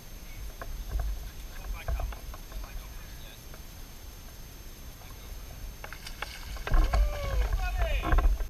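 Low wind rumble on the microphone and light clicks of rod and reel handling in a fishing boat. About seven seconds in, a louder rush of noise with sharp splashes as a hooked largemouth bass thrashes at the surface, along with a short rising-and-falling vocal exclamation.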